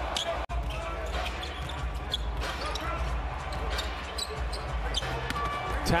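Basketball being dribbled on a hardwood court, with scattered short knocks and faint voices over a steady arena hum. The sound drops out briefly about half a second in.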